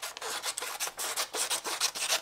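Paper scissors snipping through a sheet of printer paper in a quick run of short crisp cuts, several a second, as excess paper is trimmed from an applique template copy.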